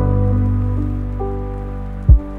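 Mellow lo-fi hip hop music: soft held keyboard chords over a deep bass note, with no drums, the notes shifting a few times and the level easing down slightly toward the end.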